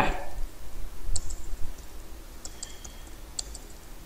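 Computer keyboard keystrokes as a short command is typed: a handful of separate sharp key clicks, scattered unevenly.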